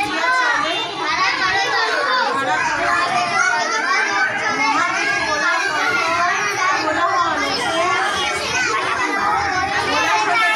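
Young children's voices talking and calling out over one another, a continuous high-pitched overlapping chatter.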